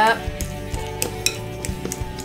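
Spoon clicking and scraping against a glass mixing bowl as avocado is broken up and stirred, about half a dozen irregular clicks.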